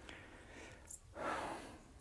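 A man's faint breath drawn in between sentences: a soft rush of air of about half a second in the second half, after a small click about a second in.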